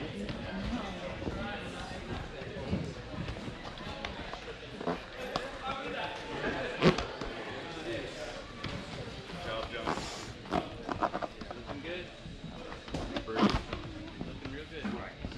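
Indistinct chatter of onlookers in a large hall. A few sharp knocks and taps stand out: one about halfway through, a quick run of them a little later, and another near the end.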